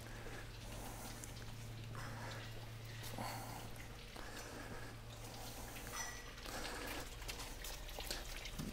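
Quiet indoor room tone: a steady low hum, with a few faint, soft scuffing sounds.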